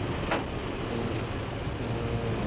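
Rescue launch's engines running with a steady low drone, heard inside the cabin.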